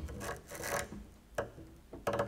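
Double bass played with extended technique: short, noisy scraping and rubbing gestures on the strings and wooden body rather than pitched notes. There is a longer scrape in the first second, then a sharper, shorter one past the middle.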